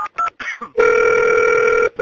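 Telephone touch-tone dialling: the last quick two-tone beeps of a number being dialled, then a steady phone-line tone that starts just under a second in and breaks off briefly near the end.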